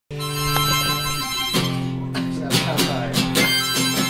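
Music: a wind instrument playing sustained chords. The first chord is held for about a second and a half, then the chords change every half second or so, each with a sharp attack.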